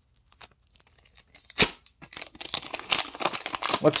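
Wrapper of a 2020-21 Upper Deck Extended hockey card pack crinkling and tearing open, starting about two seconds in and growing busier toward the end, after a few light clicks and one sharp tick.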